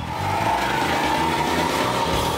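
A car engine revving hard, with a steady high tone running through it.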